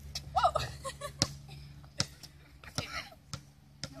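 A basketball bouncing on an outdoor asphalt court: four sharp bounces, unevenly spaced, about a second in, at two seconds and twice near the end.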